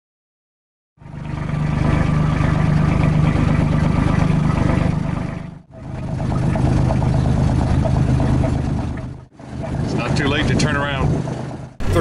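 A sailboat's outboard motor running steadily with a low hum. It cuts out briefly twice, and a few words of speech come near the end. The first second is silent.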